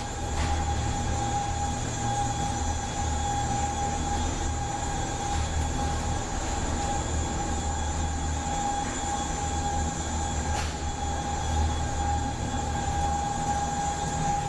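Intervect passenger lift running as the car travels up: its motor drive gives a steady low hum with a constant high whine over it.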